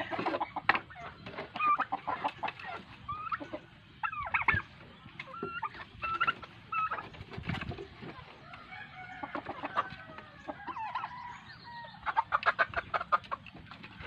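Backyard chickens clucking and calling as they crowd in to feed. There are many short calls, a longer drawn-out call around the middle and a quick run of short sounds near the end.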